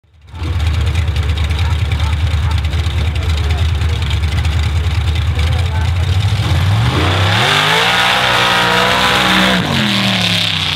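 Mud bog 4x4 truck's engine running lumpy and pulsing at the start line, then revving up sharply at launch about six and a half seconds in. The revs stay high as it drives through the mud pit and drop just before the end.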